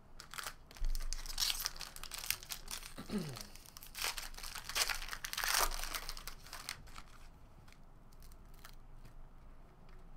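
A foil trading-card pack being torn open and crinkled by hand: a run of crackling rips and crinkles lasting several seconds, then fading to soft handling of the cards near the end.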